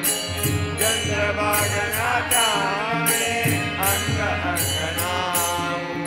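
Devotional bhajan: a male voice singing a melody with ornamented pitch bends, over a steady low drone and percussion keeping an even beat of about two strokes a second.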